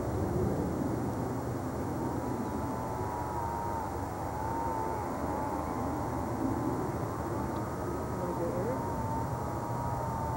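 Steady low rumble of distant engine noise with a thin, wavering high whine running through it.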